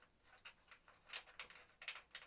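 Faint, scattered light ticks and clicks of small metal parts being handled as the saddle clamp bolts are worked by hand into the seatpost clamp.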